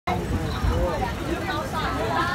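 Several people talking over the low, steady rumble of a moving vehicle heard from inside.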